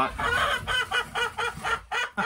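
Chickens clucking in a quick run of short calls, about five a second.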